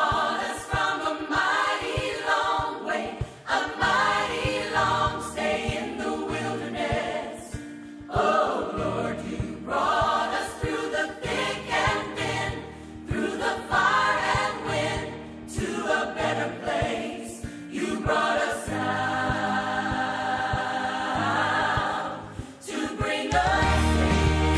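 Gospel song sung by a choir of voices over a steady bass accompaniment. Just before the end, a louder, heavier bass comes in as the music changes.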